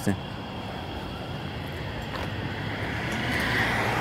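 Outdoor background noise with a low steady hum, and the sound of a passing vehicle slowly growing louder toward the end.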